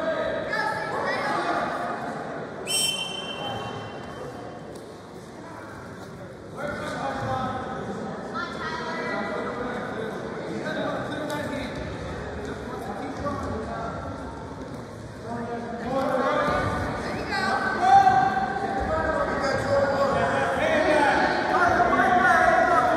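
Voices shouting in a large, echoing gym, with one short referee's whistle blast about three seconds in, starting the wrestling from referee's position.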